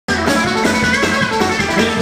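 Live band playing: acoustic guitar strumming over upright bass and drums, at a steady pulse.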